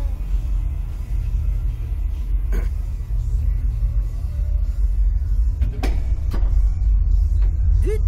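Steady low rumble that grows louder after about five seconds, with a few short knocks: one about two and a half seconds in and two close together near six seconds.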